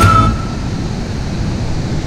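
Steady rushing noise of river water pouring over the spillway of a low dam. A whistled note of background music trails off at the very start.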